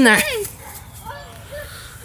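Speech: an adult's voice finishes a short phrase. Then low background noise with a faint, brief voice-like sound about half a second to a second in.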